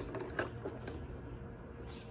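Faint handling noise from a cardboard toy box: a few light clicks and rustles about half a second in as a small toy is taken out of an opened door, then quiet room tone.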